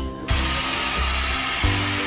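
A steady rushing hiss starts a moment in and keeps going over background music.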